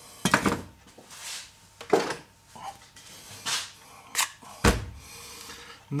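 Metal hand tools being handled on a workbench, with a rasp put down and a knife picked up: a series of separate knocks and clatters, with a heavier thud about three-quarters of the way in.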